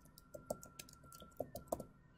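Typing on a computer keyboard: a quick run of faint keystrokes, several a second, as a word is typed out.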